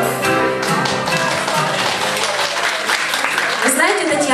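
Instrumental backing track of a pop song playing its closing bars, cutting out about halfway through, followed by brief scattered applause.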